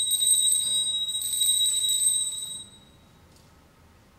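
Altar bell rung by an altar server at the elevation of the chalice: a bright, high ringing, shaken again about a second in, that stops about two and a half seconds in.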